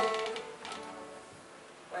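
Acoustic string band of banjo, guitars and fiddle ending a phrase: the last strummed chord rings on and fades away within about the first second, leaving only faint room sound until a voice comes in at the very end.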